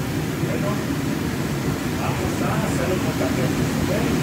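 Steady low roar of a commercial kitchen: the ventilation and gas-fired grill burners running, with faint voices in the background.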